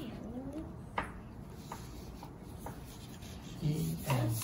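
Crayon rubbing and scratching on paper laid on a wooden table, with a sharp tap about a second in and a few lighter ticks. A child's high, sliding vocal sound at the start and a low voiced sound near the end.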